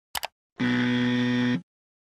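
A quick click sound effect, then a low electronic buzzer sounding steadily for about a second and cutting off abruptly: an error or 'denied' buzzer as the share button is clicked and turns red.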